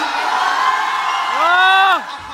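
A man's voice, ending about a second and a half in with a loud call that rises in pitch, is held for about half a second and cuts off abruptly.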